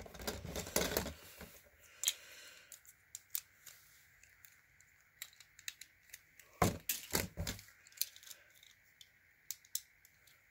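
A Beyblade Burst top spins down, rattling against the plastic stadium floor for the first second or so. Then come scattered clicks and clatter as the tops and burst-off parts are picked up out of the stadium, loudest about six and a half to seven and a half seconds in.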